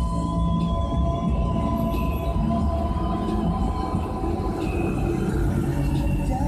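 Music from a car radio with long held notes, heard inside the car's cabin over the low rumble of the engine and tyres on the road.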